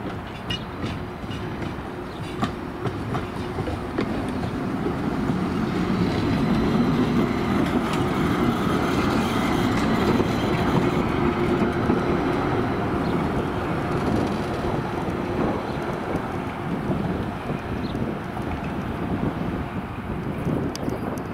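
A tram approaching and passing close by: its wheels run on the rails in a rolling rumble that grows louder, is loudest about halfway through as the car goes past, then fades.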